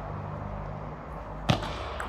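A single sharp click of a table tennis ball in play, about a second and a half in, over a steady low hum.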